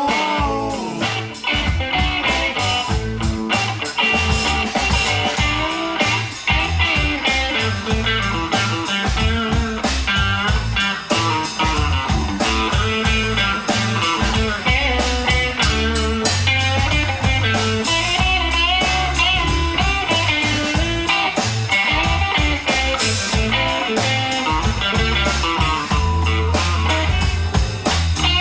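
Live blues-rock band playing an instrumental passage: an electric guitar plays bending lead lines over electric bass and a steady drum beat, with no vocals.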